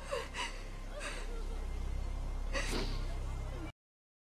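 Gasping, sobbing breaths from a TV drama scene of grief, a few short gasps over a steady low rumble. The sound cuts off abruptly shortly before the end.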